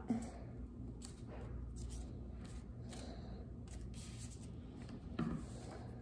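Faint rustling and light tapping of construction paper being handled as a glued black paper strip is pressed onto a pink paper sheet, over a steady low room hum.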